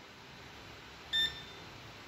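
A single short, high-pitched electronic beep about a second in, from a HOKI 813 digital multimeter, over quiet room tone.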